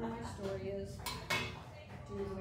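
Two sharp clinks of dishes or glassware about a second in, each with a short ring, over faint voices.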